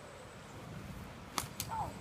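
A single sharp click about one and a half seconds in, with a weaker click just after it, followed by a short spoken "oh".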